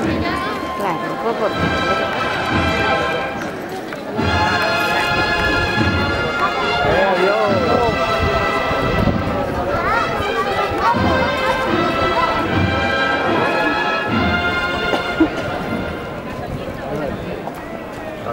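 Holy Week processional band music: brass playing long held chords in phrases, with brief breaks between them, over a steady drum beat. Crowd voices are mixed in.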